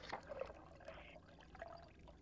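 Hot liquid being poured into a mug: a faint, uneven splashing and gurgling stream, with a few louder splashes early on.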